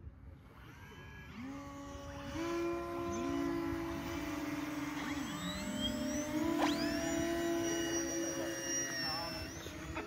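Several electric glider motors and propellers spin up one after another, each a rising whine that settles into a steady drone, building into an overlapping chord. A higher whine climbs steeply about six and a half seconds in.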